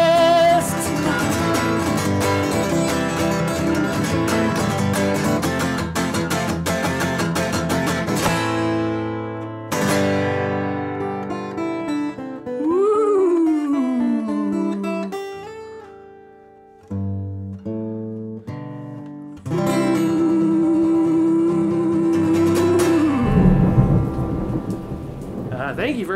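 Acoustic guitar playing a song's instrumental ending: busy strumming for about eight seconds, then sparser notes with pauses. Near the end a long held note slides down in pitch.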